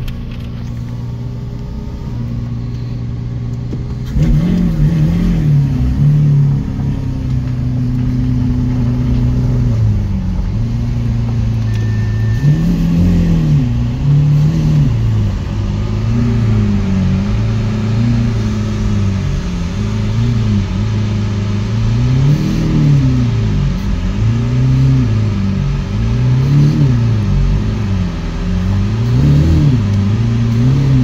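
Lamborghini Aventador SV's V12 engine heard from inside the cabin: a steady idle, then from about four seconds in the engine note rises and falls over and over under light throttle as the car creeps along at low speed.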